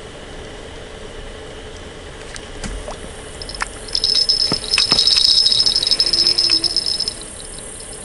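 Electronic carp bite alarm on a feeder rod sounding a fast run of high-pitched beeps for about three seconds, starting about three and a half seconds in: line being pulled by a biting fish. A few faint clicks come before it.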